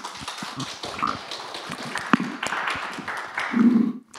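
Audience applauding with many hand claps, with a cough about a second in and a brief, louder low sound near the end.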